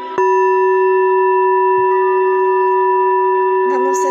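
A singing bowl struck once with a wooden mallet, then left ringing with a steady low hum and a clear higher tone that hold without fading.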